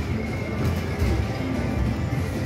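Electronic slot-machine music and effects as the reels of an EGT Flaming Hot video slot spin, over a steady low din of a casino floor.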